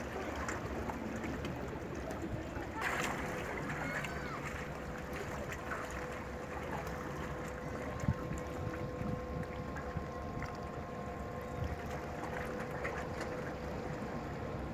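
Speed Runner 3 high-speed ferry approaching, its engines a steady drone with a held tone, over wind on the microphone and lapping water. A brief burst of noise comes about three seconds in, and a sharp knock just after the midpoint.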